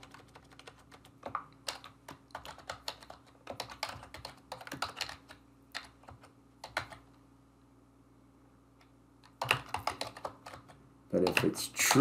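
Typing on a computer keyboard: irregular runs of keystroke clicks, stopping for about two seconds past the middle and then picking up again for a short run.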